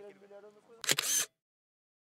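Faint voices, then about a second in a loud digital SLR camera shutter release, a double click lasting under half a second, after which the sound cuts out completely.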